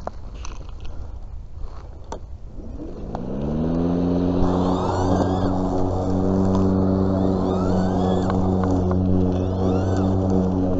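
Battery-powered EGO cordless lawn mower motor spinning up about three seconds in, its pitch rising quickly and then holding at a steady hum. Before it starts there are only light clicks and rustling from handling.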